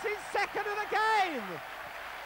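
Football crowd cheering and applauding a goal, under a commentator's excited shout that is drawn out and falls away about one and a half seconds in.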